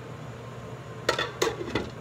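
Glass pan lid with a metal rim being set down on a stainless steel sauté pan to seal it for dum cooking: three quick clinks of lid against pan, each with a short ring, in the second half.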